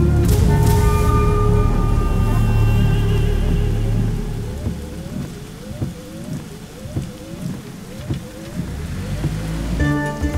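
Film score music over the sound of heavy rain. The deep held notes of the score drop away about four seconds in, leaving the rain with a run of short rising tones, and the music swells back near the end.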